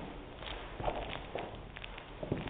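Footsteps of a person in sneakers on a wooden floor, a few separate steps coming up close.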